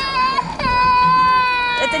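A young child crying: a short cry, then one long, drawn-out wail that holds its pitch and sinks slightly before breaking off near the end.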